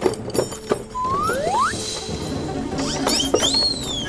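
Cartoon background music with sneaking sound effects: two quick rising whistles about a second in, then a long falling whistle near the end.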